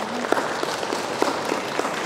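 Audience applauding, with individual hand claps standing out from the general clapping.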